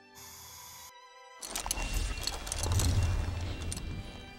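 Cartoon sound effects for a robot making food: a brief steady electronic tone, then after a short gap a rumbling, hissing machine-like noise that builds over about two seconds.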